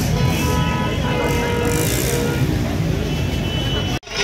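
Loud street-celebration din: amplified music with a heavy bass from loudspeakers, mixed with the noise of a large crowd.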